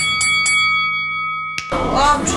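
A bright bell-chime sound effect, struck two or three times in quick succession, then ringing on in a slowly fading tone. A burst of noisy background sound cuts in near the end.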